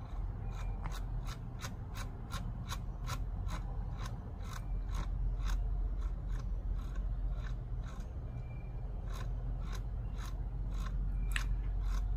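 A run of light, evenly spaced clicks, about three a second, with a lull in the middle, from scrolling and clicking through a list on a device. A steady low hum lies underneath.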